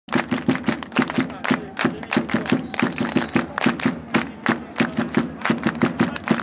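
A crowd of football ultras clapping in unison with raised hands, a fast, even rhythm of about three to four claps a second.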